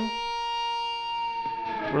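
Electric guitar holding a whole-step bend at the 10th fret, the single bent note left to ring with steady sustain.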